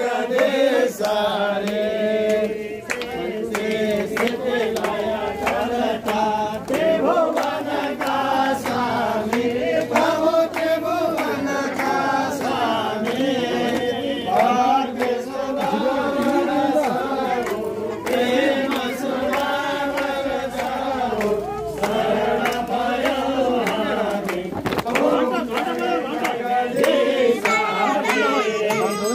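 A group of people chanting a Hindu devotional song together in unison, with frequent sharp percussive clicks running through it.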